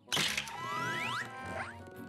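Cartoon sound effects of a mechanical ice cream cart dispensing cones: a sudden clunk, then machine whirring with quick rising glides in pitch, over background music.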